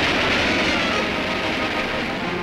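Roar of a US Navy Vanguard rocket exploding and burning on its launch pad, a dense rumbling noise that slowly fades. The rocket lost thrust and fell back onto the pad, a failed launch.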